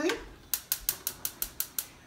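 Gas stove burner igniter clicking rapidly, about six sharp clicks a second, as the burner is lit.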